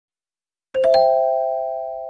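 A three-note rising chime, like a doorbell. The notes are struck in quick succession a little under a second in, then ring on together and slowly fade.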